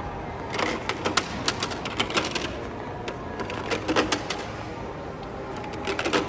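Plastic discs of a giant Connect Four game clattering as they are dropped into the grid and rattle down its columns: quick runs of sharp clicks, about a second in and again near four seconds.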